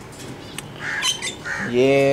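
Caged pet birds giving a quick run of short, high calls, cut off as a man's voice starts near the end.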